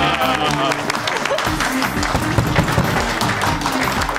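A group of people clapping, with excited voices, over background music.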